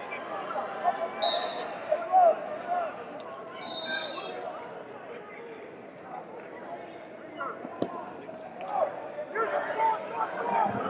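Voices of coaches and spectators calling out across a large, echoing arena, with two short high-pitched tones in the first four seconds and scattered thuds, one sharp knock near the end.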